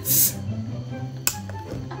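Background music with a few sharp metallic clicks of a bottle opener catching on a glass soda bottle's crown cap as it is pried at, after a short hiss at the start.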